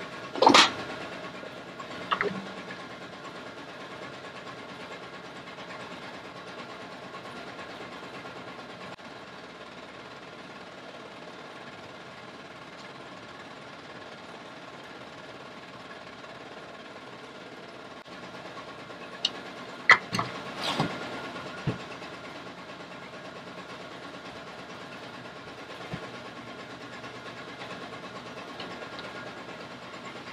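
Steady mechanical hum of workshop machinery, with a few sharp knocks about half a second and two seconds in, and a cluster of them around twenty seconds in.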